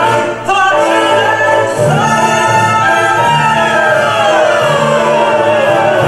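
A woman singing a wordless melody over orchestral music with a deep sustained bass. She holds one long note, then glides down to a lower held note about two-thirds of the way through.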